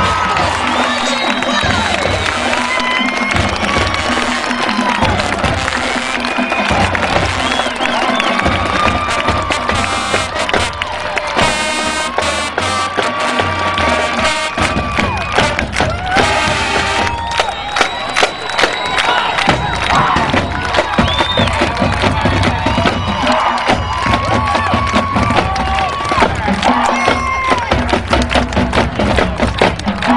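High school marching band playing, with drums, while a stadium crowd cheers and shouts over it. From about halfway the drum strikes come through sharply and regularly.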